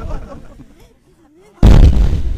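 Deep booming impact sound effect: the rumble of one boom dies away, then a second sudden, loud boom hits about one and a half seconds in and rolls off slowly. A faint wavering tone sounds in the lull between them.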